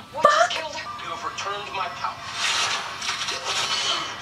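Soundtrack of a TV drama episode: a short vocal exclamation at the start, then dramatic background score, with a rushing noise swelling through the second half.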